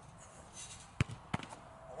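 A football struck hard: one sharp thud about a second in, then two lighter knocks within the next half second.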